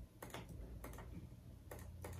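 A few faint clicks of a computer mouse over a low, steady room hum.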